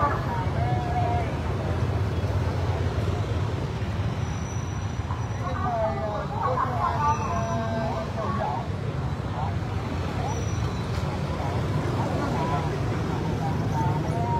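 Steady low rumble of motorbike street traffic under the chatter of a crowd, with voices louder about six to eight seconds in.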